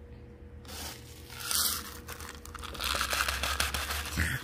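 Coarse succulent potting grit being handled in a plastic scoop. There is a brief rustle about a second and a half in, then from about three seconds a run of small crackling clicks as the grains shift and rattle in the scoop.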